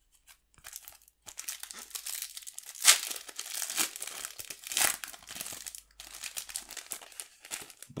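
A foil trading-card booster pack being torn open and crinkled by hand: a continuous crackle of the wrapper with a few louder rips about three, four and five seconds in.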